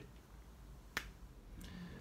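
Quiet room tone broken by a single sharp click about a second in.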